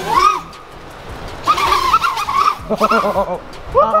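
People crying out and laughing in short, high-pitched bursts while a small FPV quadcopter flies erratically, its motors buzzing faintly underneath.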